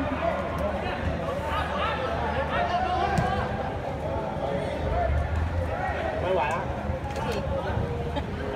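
Many voices overlapping at once: players and spectators calling out and chattering around a football pitch under a metal roof.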